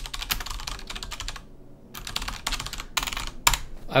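Typing on a computer keyboard in two quick runs of key clicks, with a short pause of about half a second between them.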